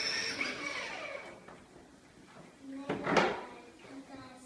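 Battery-powered toy ride-on police motorbike running, its sound fading out over the first second or so. Near three seconds comes one short, loud burst of noise, with faint children's voices in the room.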